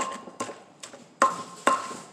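Wooden pestle pounding shredded green papaya in a clay mortar for papaya salad: five strikes, about two a second. The harder strikes leave a short ring from the mortar.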